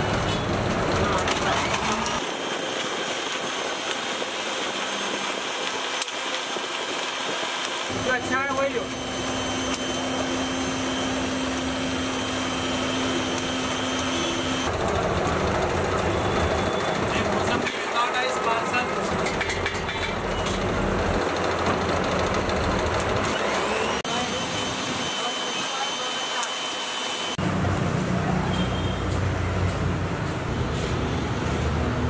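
Busy roadside ambience: passing traffic and people talking in the background, with a steady low hum for several seconds in the middle, changing abruptly at several cuts.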